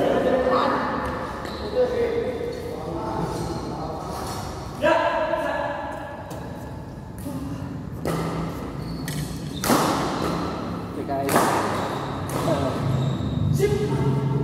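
Badminton rackets striking a shuttlecock, a few sharp cracks spaced a second or more apart that echo around a large hall, among players' voices calling out.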